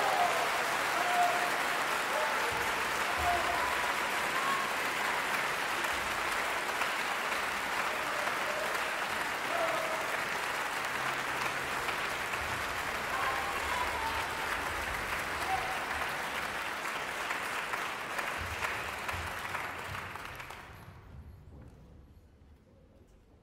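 Theatre audience applauding steadily, with a few voices calling out from the crowd; the applause dies away in the last couple of seconds.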